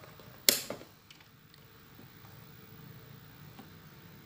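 A sharp click about half a second in, followed at once by a smaller one, from the handling of a digital multimeter and its test probes, over a faint steady low hum.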